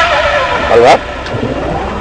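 A voice says a short word, over the steady low rumble of a moving car heard from inside the cabin.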